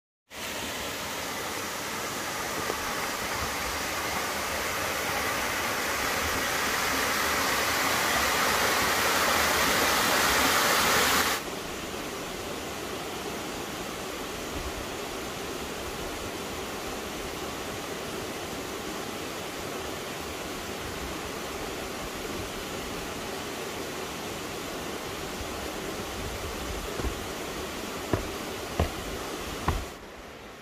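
Steady rushing of a mountain stream, swelling slowly for about ten seconds, then dropping suddenly to a lower, even rush. A footstep or two sound on the bridge deck near the end.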